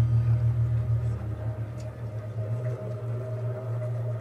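Steady low engine drone of a boat in a TV series' soundtrack, with a faint higher hum over it.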